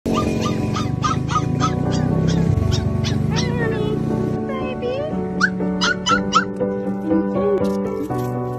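A puppy trapped in a ditch screaming in repeated short, high yelps, about three a second, that thin out after about four seconds; distress cries of a young dog that cannot get out. Background music plays underneath.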